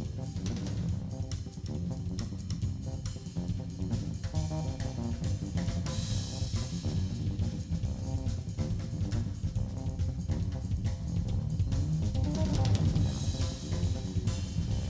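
Jazz drum kit played with sticks: dense snare, bass drum and cymbal hits in a driving rhythm that keeps going without a break.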